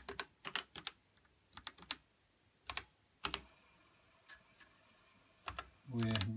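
Keys on an Apple II keyboard being typed, sharp clicks in several short irregular runs with pauses between.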